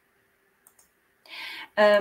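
A pause in a woman's speech, nearly silent apart from a couple of faint clicks, then a short breath and she starts speaking again near the end.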